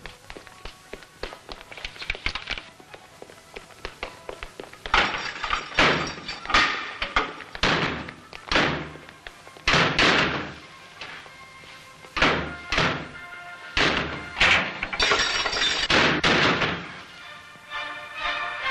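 A run of loud, irregular heavy thuds and blows starting about five seconds in and going on to the end, with music underneath.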